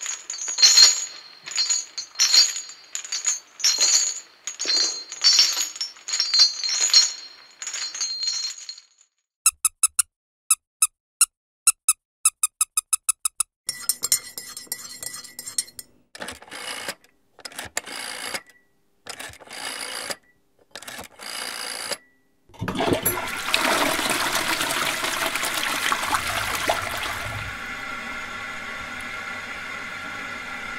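Slow footsteps with chains rattling at each step, about one and a half steps a second. Then a teaspoon taps and clinks as it stirs a cup of tea. About three-quarters of the way through, a toilet flushes with a sudden rush of water that settles into a steady hiss of the cistern refilling.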